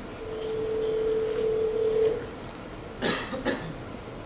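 Telephone ringback tone from the call being placed, heard through the phone's earbud: a single steady tone ring lasting about two seconds. Two short noises follow about three seconds in.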